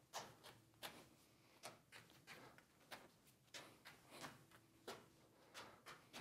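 Faint, soft pats of three juggling balls landing in the hands during a running Mills Mess multiplex pattern, about two to three catches a second, slightly uneven.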